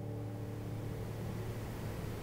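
Room tone: a steady low hum under an even hiss.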